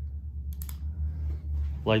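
A steady low rumble of a handheld phone microphone being moved about, with a couple of sharp clicks about half a second in.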